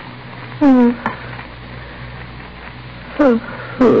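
A woman's voice letting out two short moans that fall in pitch, about a second in and again near the end, over the steady hiss and hum of an old radio recording.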